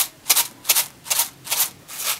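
Dry rice rattling in a small lidded plastic food container, shaken in short regular strokes about two and a half times a second.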